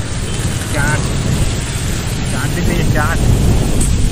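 Wind buffeting the microphone and road noise from a moving motorbike, a steady low rumble, with brief snatches of voices about a second in and again around three seconds in.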